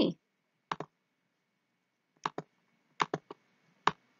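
Sharp computer mouse clicks: a pair about a second in, another pair past two seconds, three quick clicks around three seconds and one more near the end.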